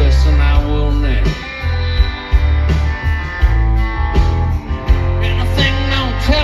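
A live rock band plays amplified electric guitars, bass and drums with a steady drum beat, picked up by a phone in the crowd.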